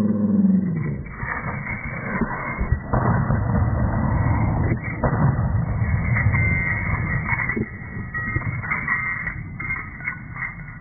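Body-camera audio slowed far below normal speed: a deep, drawn-out voice sound fades out about a second in. It gives way to a long, rough rumble with a few knocks.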